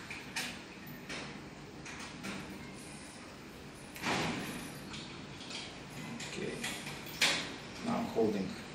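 Faint clicks and scraping of a screwdriver working a small screw at the bleed port of a hydraulic disc brake lever. Two short hissing noises stand out: one about four seconds in lasting about half a second, and a sharper, briefer one about seven seconds in.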